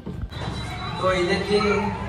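Speech: people's voices talking, with no other distinct sound.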